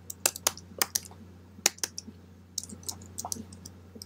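Keystrokes on a computer keyboard: about a dozen irregular clicks as a short line of code is typed, with a brief pause about halfway through.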